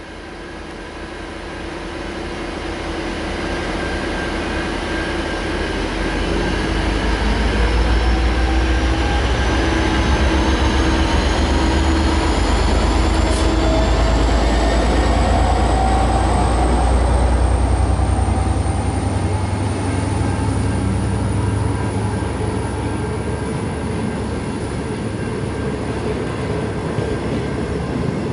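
V/Line N-class diesel-electric locomotive pulling its train away from the platform. The deep diesel rumble builds over the first several seconds, stays strong through the middle and eases off as the carriages roll past, while a thin whine rises slowly in pitch as the train gathers speed.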